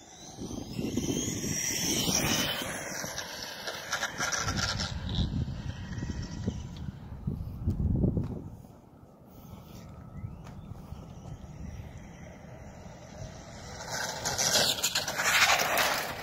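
High electric-motor whine of an electric RC car, falling in pitch over the first few seconds and rising again near the end, over a low rumbling noise.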